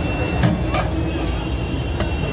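Steady street traffic noise, with a ladle knocking twice against a metal pot about half a second in.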